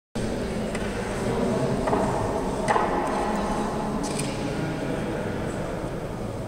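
Echoing room tone of a large gallery hall: a steady murmur with faint distant voices, broken by a few sharp clicks or taps, the loudest nearly three seconds in.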